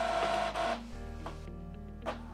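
Epson EcoTank ET-3850's scanner motor whirring with a steady whine as it scans the original for a copy, stopping a little under a second in. Soft background music follows.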